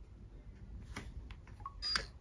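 Faint handling of an iPhone: a few soft clicks and taps, then a brief higher blip of sound near the end.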